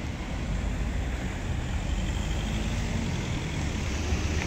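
Steady low rumble of road traffic, with no distinct single event standing out.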